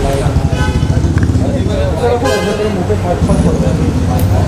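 Street traffic with a car horn honking briefly, twice, over a steady low rumble, amid people's voices.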